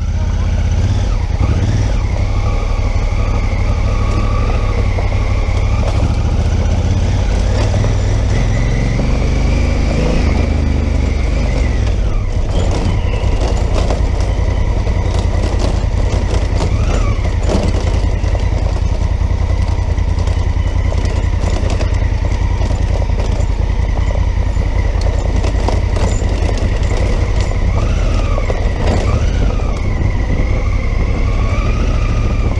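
Honda Africa Twin motorcycle riding along a rough dirt road, its engine running steadily with its note rising and falling a few times, under a heavy low rumble of wind and road noise on the camera microphone.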